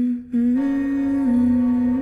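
A voice humming a slow tune in long held notes that step up and down in pitch, with a short break about a quarter second in.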